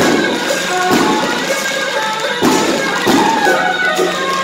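Traditional Taiwanese temple procession music: a held, pitched wind melody over loud percussion strikes that land every second or so.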